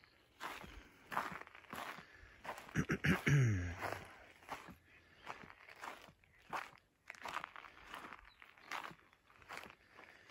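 Footsteps crunching over dry grass, pine needles and rocky ground, a step every half second or so. About three seconds in, a short low vocal sound from a man, falling in pitch.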